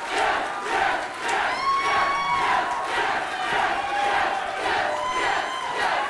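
A small crowd cheering and shouting, with a few long shouts from single voices standing out about two seconds in and again near the end.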